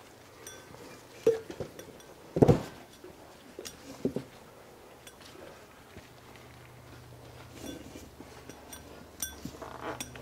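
Clunks and clinks of a BMW N20 aluminium engine block being set down and shifted on a workbench, with the loudest thump about two and a half seconds in and a few lighter knocks after. A faint low hum runs under the second half.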